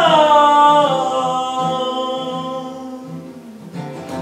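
A man singing one long held note that slides down in pitch in the first second, then holds and fades, over soft, steady acoustic guitar strumming.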